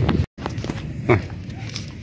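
A man's short voiced 'hah' over steady low outdoor background noise, with a brief dead-silent gap near the start where the recording is cut.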